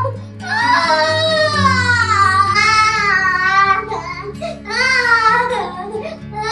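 A young boy crying in long, high, rising-and-falling wails with short breaks between them, over background music with low held notes.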